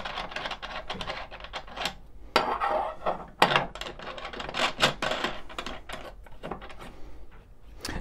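Irregular metallic clicks and clinks as nuts, washers and a metal mounting bracket are handled and fitted by hand onto a traffic light's mounting knuckle.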